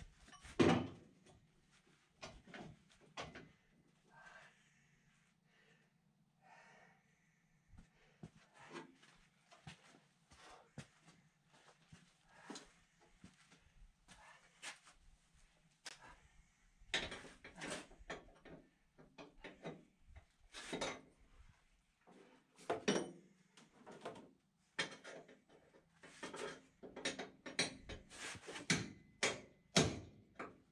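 Irregular metal knocks and clanks from working a welded bumper bracket loose on a van body; the loudest knock comes about a second in, and the knocks grow busier in the last dozen seconds.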